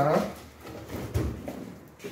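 Handling noise of a large boxed stove being tilted over on a cardboard-covered floor: faint scuffs and a soft low thump about a second in.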